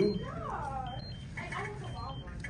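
Faint speech: an audience member's voice answering, quieter and farther off than the microphone voice.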